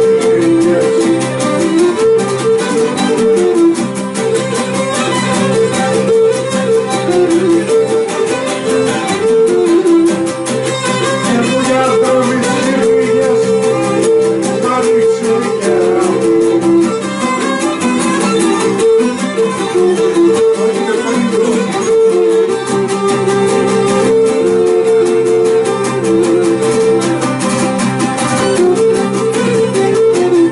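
Cretan lyra playing the melody of a syrtos, bowed, over laouta strumming a steady dance rhythm.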